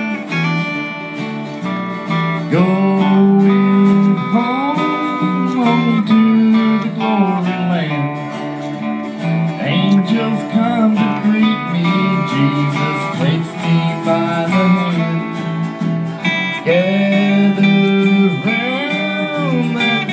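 Instrumental break in a gospel song: acoustic guitars strumming chords over a bass guitar, with a lead line whose notes slide up and down.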